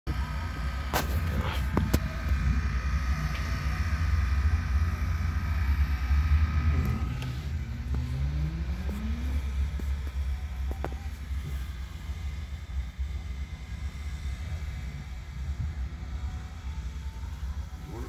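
Car engines running with a heavy low rumble. About seven seconds in, one engine's pitch rises for a couple of seconds as it speeds up, and after that the rumble is lighter. A few sharp clicks come near the start.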